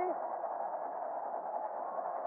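Steady stadium crowd noise with no distinct events, thin and muffled as heard through a narrow-band radio broadcast.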